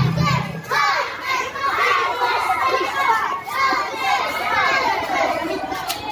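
A crowd of young children chattering and calling out all at once, many voices overlapping. Background music stops about a second in.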